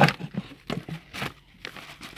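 Plastic bags and wrappers crinkling in several short rustles as a hand rummages through shopping and pulls out a cardboard tea box.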